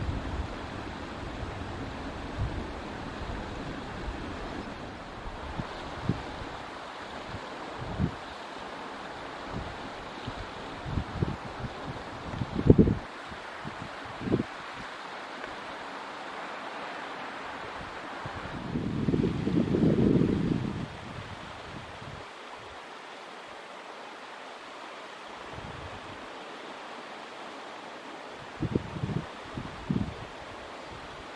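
Wind buffeting the microphone outdoors: a steady rush with scattered low thumps and a stronger gust about twenty seconds in.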